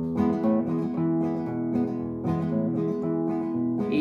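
Nylon-string classical guitar strummed in a steady rhythm, starting suddenly and playing the opening chords of a song before the singing comes in.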